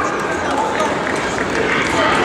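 Indistinct voices of spectators and team benches talking in a gymnasium, a steady background murmur of chatter.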